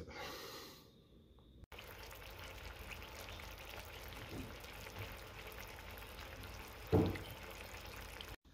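Peeled yabby meat simmering in an oily sauce in a frying pan: a soft, steady sizzle and bubbling that starts about two seconds in. There is a short, louder low sound near the end.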